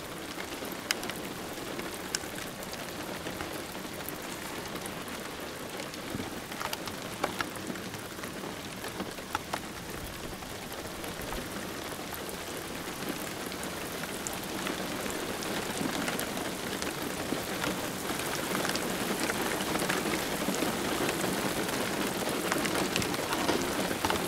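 Rain falling, a steady hiss with scattered sharp drop ticks, growing louder over the second half.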